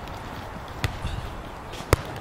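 A volleyball struck twice, about a second apart: a sharp smack just under a second in, then a louder one near the end as the ball is taken on a forearm pass.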